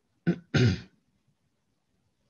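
A man clearing his throat: a short rough burst and then a longer one, both within the first second.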